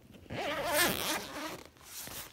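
Backpack zipper being pulled along in one stroke of about a second, its buzz wavering in pitch with the speed of the pull.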